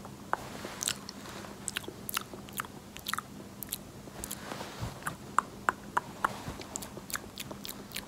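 Close-miked ASMR clicks: many irregular, sharp, crackly wet clicks, several a second, with no speech.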